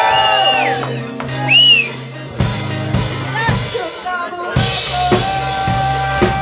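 A rock band playing live with electric guitar and bass, with high gliding notes over the first two seconds. The drum kit comes in with kick and snare hits about two and a half seconds in, settling into a steady beat with a held guitar note from about four and a half seconds.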